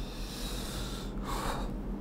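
A man breathing audibly through the nose close to a clip-on microphone: two soft, noisy breaths, the second about a second in, fading down in pitch.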